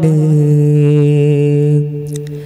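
Young man singing a Malayalam madh song without accompaniment, holding one long, steady note that fades near the end.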